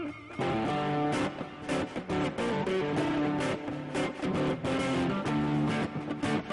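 Electric guitar playing a blues-rock riff: it opens on a held, bent note with vibrato, then moves into a quick, rhythmic run of picked notes and chords.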